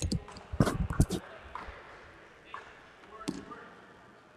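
Dodgeballs bouncing on and striking the hardwood gym floor: a quick cluster of sharp hits around a second in and another a little past three seconds, ringing in a large hall.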